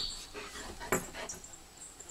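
Quiet sounds from a Bernese mountain dog settling into a down beside its handler, with one sharp click about a second in.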